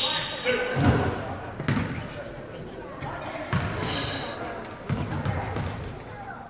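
A basketball bouncing a few times on a hardwood gym floor, about two seconds between bounces, echoing in the large hall, with indistinct spectator chatter underneath.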